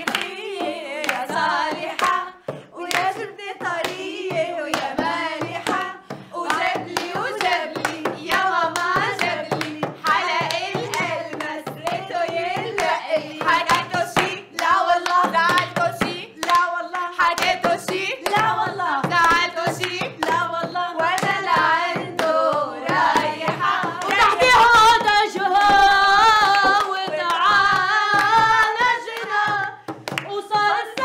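A group of women singing together, with rhythmic hand clapping and a hand-held frame drum beaten in time. The singing grows louder in the last few seconds.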